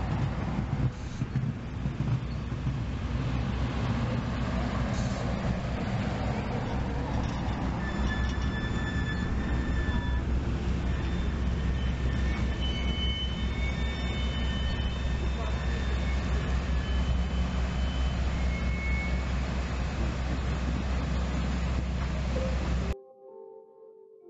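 Rio Grande Ski Train passenger cars rolling slowly past on the rails, with a steady low rumble of wheels on track. Thin high wheel squeals come and go through the middle stretch. The train sound cuts off about a second before the end, giving way to soft music.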